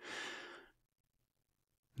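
A man's single audible breath, about half a second long.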